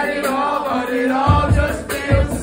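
Live hip-hop song: voices chanting over the backing track, with heavy bass drum hits coming in a little over a second in.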